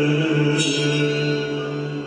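Great Island Mouthbow playing a held low drone with ringing overtones, like a chant. A bright new stroke on the string comes about half a second in, and the sound eases off near the end.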